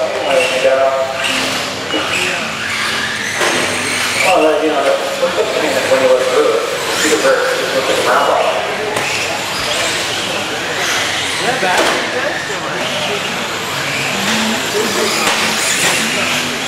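Radio-controlled race cars running on a dirt track, their motors whining up and down in pitch as they accelerate and slow, mixed with the chatter of voices in the hall.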